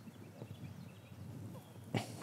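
Faint rustling and handling noise from garlic and onion plants being worked by hand in a garden bed, ending with one brief sharp click.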